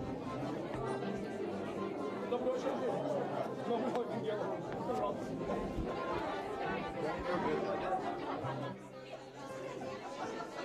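Crowd chatter in a busy pub: many voices talking at once in an indistinct hubbub, easing slightly near the end.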